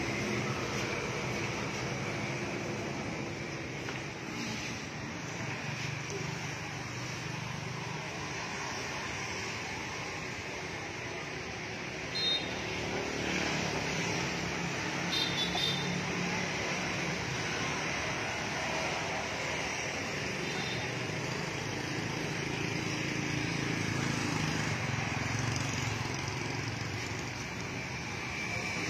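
Steady motor-vehicle running noise with faint voices in the background, and a few short high-pitched beeps about twelve and fifteen seconds in.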